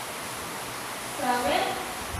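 Steady hiss of room and recording noise, with a brief spoken word about a second and a half in.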